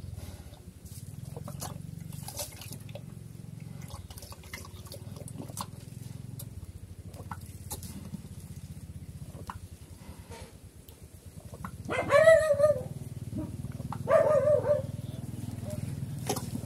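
Black pig eating wet feed from a bowl: irregular wet slurping and chewing clicks over a steady low hum. Two louder, short pitched calls come about twelve and fourteen seconds in.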